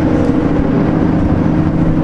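Steady mechanical hum with a low rumble beneath it and a few fixed, unchanging tones.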